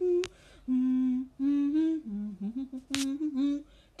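A voice humming a slow melody, a few held notes with short breaks between them. There are two brief sharp sounds, one just after the start and one about three seconds in.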